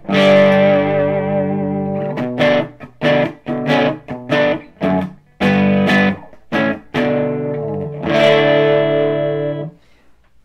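Electric Les Paul guitar played through an 18-watt Reinhardt MI-6 amp's treble-mid-bass channel, set to a mostly clean Marshall-style tone with a little grit. A chord rings for about two seconds, then a run of short, choppy chords, then a last chord held for about a second and a half before it is stopped.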